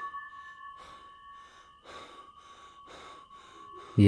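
Faint, eerie horror-film ambience: two steady ringing tones, the higher one fading out within the first second and the lower one holding until near the end, over a soft hiss that pulses about twice a second.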